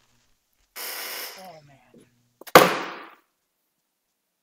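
Handling noise picked up close on a desk microphone as a person takes off a headset and gets up: a rustle about a second in, then one sharp, loud knock at about two and a half seconds that dies away quickly.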